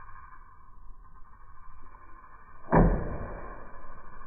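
A single sharp thump about three-quarters of the way through, ringing briefly, over a steady muffled hum.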